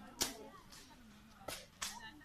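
Grass being slashed with a machete: three sharp swishing strokes through the stems, one just after the start and two close together near the end.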